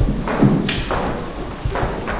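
Footsteps on a hollow wooden stage floor: a string of irregular heavy steps knocking and echoing in a large hall.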